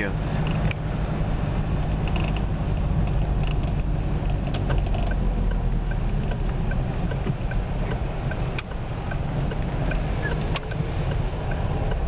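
Steady low engine and tyre rumble heard inside a moving car. For several seconds in the middle, a turn-signal indicator ticks evenly, about twice a second.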